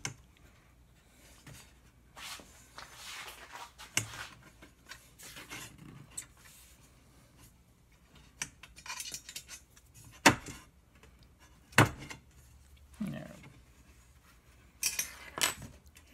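Aluminium extrusion rails and corner brackets being slid and adjusted by hand: scattered light metal clinks and scrapes, with two sharper knocks about ten and twelve seconds in.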